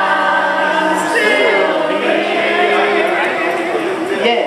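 Unaccompanied singing led by a woman's voice, teaching a song's sing-along refrain in long held notes: one note held for about the first second, a short change of pitch, then another long note.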